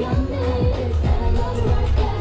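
K-pop dance track played back over a loudspeaker, with sung vocals over a deep bass line and a kick drum about twice a second.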